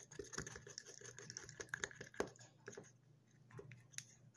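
Wooden chopstick stirring persimmon paste in a small plastic bottle: faint, irregular clicks and taps as the stick knocks against the bottle's sides and mouth.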